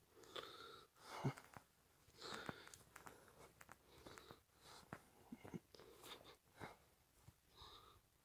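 Faint, irregular clicks and brief rustles close to the microphone, several a second: handling noise and footsteps of someone walking with a handheld camera over grass.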